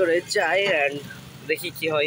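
A person's voice talking, with a vehicle engine running underneath.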